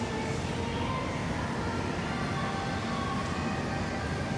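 Steady ambient noise of a large, quiet shopping-mall atrium: an even hum and hiss with a few faint tones in it.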